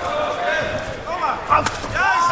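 A kickboxer's low kick landing on the opponent's leg, a couple of sharp smacks about one and a half seconds in, over arena crowd noise and shouted voices.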